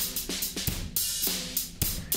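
A drum-kit recording with kick, snare and cymbal hits, playing through the original Airwindows Baxandall EQ plugin. The plugin's built-in clipping stage has no ultrasonic filtering and may add some artificiality to the highs.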